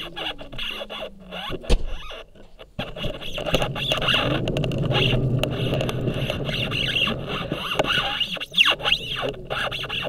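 Scooter rolling over concrete and tarmac: a sharp knock comes about two seconds in, then a steady rolling rumble from the wheels starts about three seconds in. A whine rises and falls near the end.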